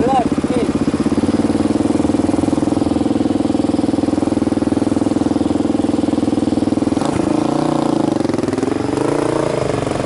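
Motorcycle engine idling with a steady, fast pulse, then revving with rising and falling pitch as the bike pulls away in traffic, beginning about seven seconds in.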